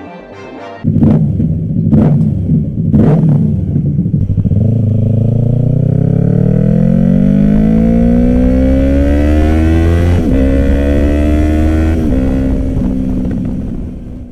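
Yamaha R3's parallel-twin engine through an M4 carbon slip-on exhaust. It is blipped sharply three times, then revs climb steadily for several seconds, dropping suddenly twice near the end.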